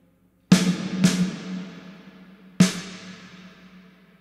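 A recorded snare drum struck three times, about half a second in, again about half a second later, and once more past the middle. It is played through Valhalla VintageVerb's Concert Hall algorithm at full mix with a 4-second decay, so each crack is followed by a long reverb tail that dies away. Meanwhile the reverb's low-cut filter is being raised, taking the low end out of the reverb.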